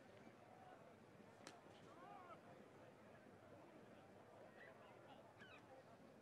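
Near silence: faint outdoor ambience with a few faint, indistinct calls and a single faint click about a second and a half in.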